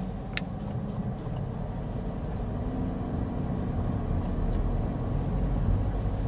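Toyota sedan's engine and road noise heard from inside the cabin as the car drives slowly, the engine note rising slightly about halfway through. A faint click near the start.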